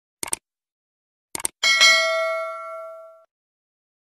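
Subscribe-button sound effect: a short mouse click, then a second click about a second later, followed at once by a bright bell ding that rings out and fades over about a second and a half.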